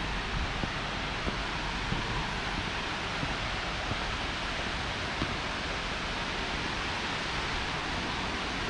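Steady rushing of Tvindefossen, a 152 m waterfall cascading down a rock face, an even roar that holds constant throughout.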